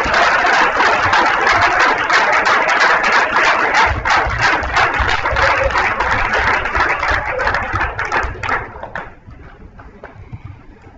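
Audience applauding, a dense patter of many hands clapping, with a few low thuds partway through; the applause thins out and stops about nine seconds in.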